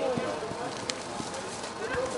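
Indistinct voices of players and spectators talking around a softball field, with a few faint clicks, one about halfway through.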